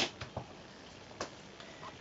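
A few light clicks and handling sounds as a sewn patchwork piece and small tools are picked up and moved, with one sharper click about a second in, over quiet room tone.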